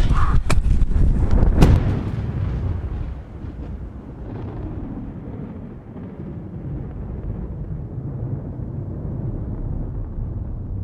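Two sharp booming hits in the first two seconds, then a long low rumble that fades down and holds on to the end: a film-trailer impact-and-rumble sound effect under the closing title.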